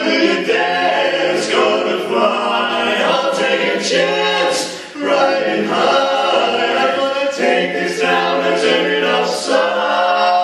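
Male barbershop quartet singing a cappella, four voices holding close-harmony chords together. The phrases are sustained, with a brief break between phrases about five seconds in.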